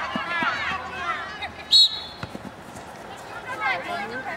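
Raised voices of sideline spectators, then about two seconds in a short, loud, shrill referee's whistle blast, which stops play after a player goes down in a challenge.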